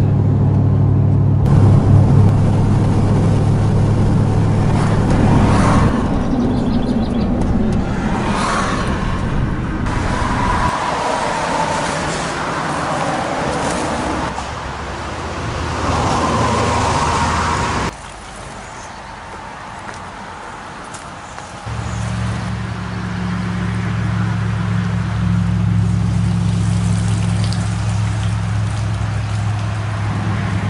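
Car driving on a paved two-lane road, with steady engine and road noise heard from inside. After about six seconds the sound changes to a shifting outdoor mix. It drops quieter for a few seconds past the middle, then a steady low hum returns for the last stretch.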